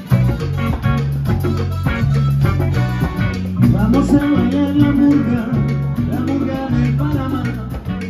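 Live Latin dance band playing an instrumental passage: electric bass line, congas and timbales, drum kit, electric guitar and keyboard over a steady dance beat.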